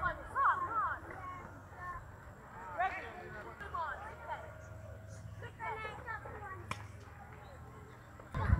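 Distant voices of players calling and shouting across an open field, with one sharp knock about two-thirds of the way through.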